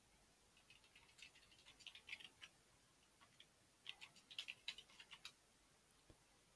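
Faint typing on a computer keyboard: two bursts of quick key clicks, the first about a second in and the second about four seconds in.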